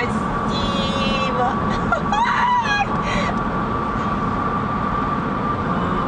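Steady road and wind noise inside a moving car's cabin at highway speed, with a constant thin whine. A brief voice sound comes about two seconds in.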